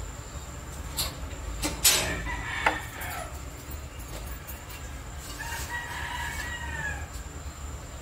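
A rooster crowing once, one long call that rises and falls, about five seconds in. It is preceded by a few sharp knocks a second or two in.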